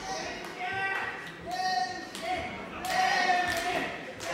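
Spectators shouting in long, held calls, with several sharp thuds of gloved punches landing during an exchange in the ring.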